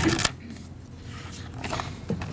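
A sharp clink just after the start and a few lighter clinks near the end, made by small hard objects such as tableware, over quiet banquet-hall room tone.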